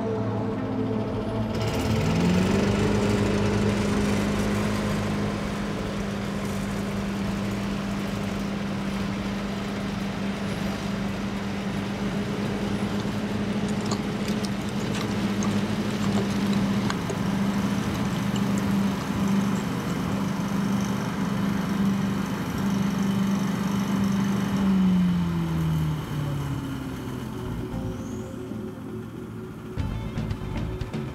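A steady motor hum that rises in pitch about two seconds in, holds, and winds down about 25 seconds in, mixed with background music.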